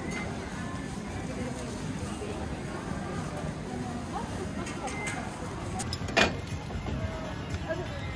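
Busy street ambience: background chatter of passers-by with music playing, and one sharp knock about six seconds in.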